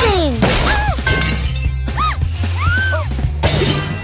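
Cartoon background music with a steady bass line, over which crash and shatter sound effects of furniture being knocked over hit about three times. Short rising-and-falling cartoon tones are heard between the crashes.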